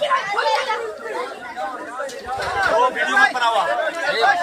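A crowd of men talking over one another: many overlapping voices in a continuous chatter, with no single clear speaker.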